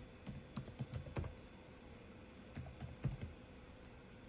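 Computer keyboard typing: a quick run of about eight keystrokes in the first second or so, a pause, then four more keystrokes between about two and a half and three seconds in.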